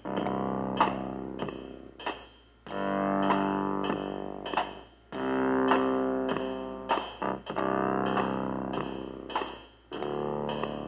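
An Artiphon Orba in its bass mode playing a slow little melody of about four long synth bass notes, each held around two seconds. Short percussive hits from the looping drum pattern, kick and cymbal, sound over it.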